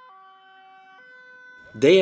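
Ambulance two-tone siren, faint, stepping between a higher and a lower pitch about once a second.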